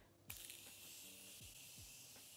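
Morphe continuous setting mist spray bottle releasing a continuous fine mist: a faint, steady hiss that starts about a third of a second in and holds evenly.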